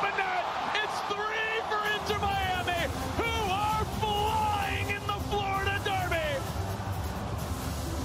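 Stadium crowd noise after a home goal, with a singing voice carrying a melody of long, gliding notes over it until about six and a half seconds in. A low crowd rumble grows louder about two seconds in.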